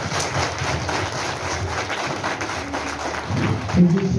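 A large seated crowd applauding: a dense, even patter of many hands clapping, with a louder voice breaking in near the end.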